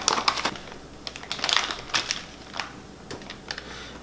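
Solid mango butter pieces being poured from a kraft paper pouch into a metal pouring pitcher: irregular clusters of small clicks and ticks as the pieces hit the pitcher, mixed with the crinkle of the paper bag.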